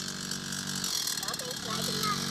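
Suzuki JR50 mini dirt bike's small two-stroke single engine running steadily at low speed, its note briefly wavering about a second in.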